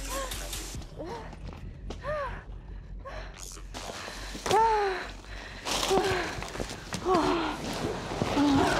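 Short wordless cries and gasps from people play-fighting with inflatable gloves: about six separate exclamations, each rising and falling in pitch, spread a second or so apart.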